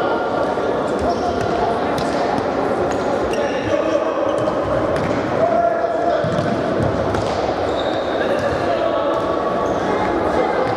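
Futsal being played in a sports hall: the ball being kicked and bouncing on the hard court, with players' voices calling, all echoing in the large hall.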